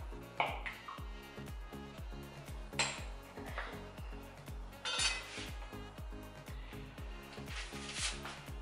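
Background music with a steady beat, over which a kitchen knife clinks sharply against a hard countertop four times as it is pressed through rolled dough, the last clink as the knife is set down near the end.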